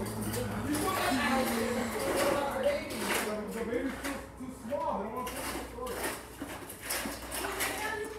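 Children's muffled voices and mouth sounds while biting and sucking soft jelly candies, with many small wet clicks.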